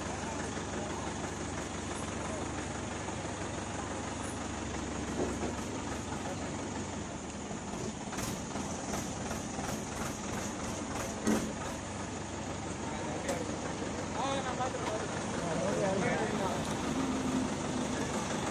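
A recovery crane's engine runs steadily while the crane holds an overturned pickup truck on its lifting straps. A few sharp clicks and a knock come midway, and men's voices call out in the second half.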